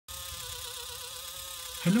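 FS90R continuous-rotation micro servo running, a steady buzzing whine whose pitch wavers slightly.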